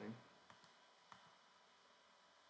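Near silence broken by a few faint, sharp clicks about half a second and a second in, the clicks of computer controls being worked.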